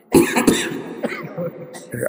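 A man coughing hard, close to a microphone: a loud cough just after the start and a second one about half a second later, then softer breathy sounds.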